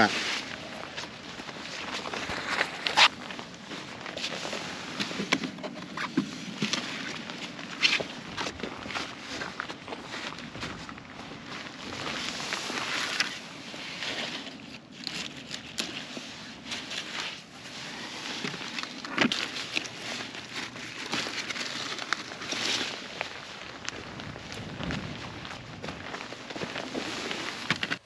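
Large zucchini leaves and hollow stems rustling as the plants are handled, with irregular crackles and snaps as zucchini are cut from the vine with a knife.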